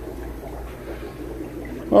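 Steady trickling and bubbling of aquarium water and filtration over a low, even hum.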